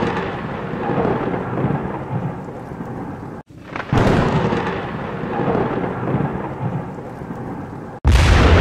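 Loud, deep rumbling noise like rolling thunder, in two long rolls that each start suddenly and slowly die away. The second roll begins about four seconds in, after a brief cut.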